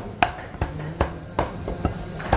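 Cleaver chopping raw chicken on a round wooden chopping block: about five sharp knocks, a little over two a second.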